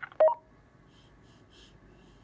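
Motorola DM4600 DMR mobile radio giving a short beep as an incoming transmission ends.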